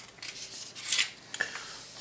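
Paper rustling as hands slide across and flatten the pages of a printed instruction booklet, with one louder swish about a second in.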